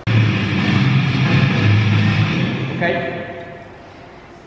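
Indistinct voices talking loudly, no clear words, easing off after about three seconds.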